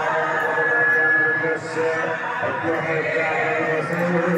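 Voices chanting, with a high note held for about a second just after the start.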